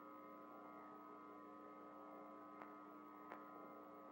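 Near silence: a faint, steady hum in an old commercial soundtrack, with two faint clicks in the second half.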